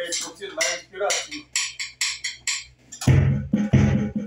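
Alesis electronic drum kit played through its speaker: a string of short, light clicky hits, then loud heavy hits with a deep low end from about three seconds in, roughly one every 0.7 seconds.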